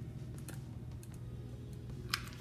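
Faint, light clicks and taps from a hot glue gun being worked against a paper cup as glue is applied, over a low steady hum.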